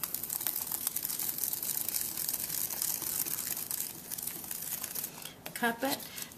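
Paper flower petals crinkling and rustling as they are handled, pressed and cupped by hand. A brief voice comes in near the end.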